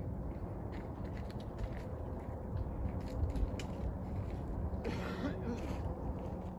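Wind noise on the camera microphone, a steady low rumble, with a few faint clicks scattered through it.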